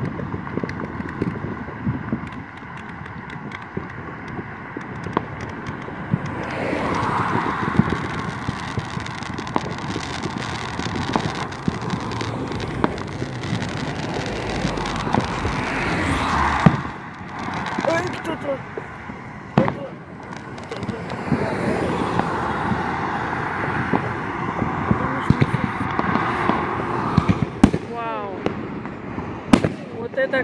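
Distant fireworks popping and banging at irregular intervals, with cars passing on the street.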